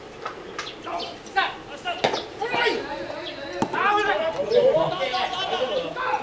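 Ballplayers' voices shouting short calls, several overlapping, across an open baseball field.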